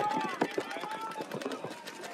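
Paintball markers popping in rapid strings of shots across the field, with distant shouted calls from players.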